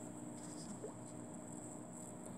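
Quiet room tone: a faint steady hum with a high, thin whine above it, and one brief faint squeak a little under a second in.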